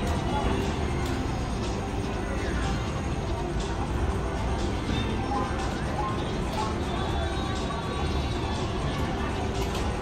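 Ultimate Screaming Links slot machine playing its free-spin bonus music and reel sound effects, steady throughout, over the background hubbub of a casino floor.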